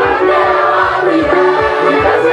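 Many voices singing a praise song together over a steady low drum beat.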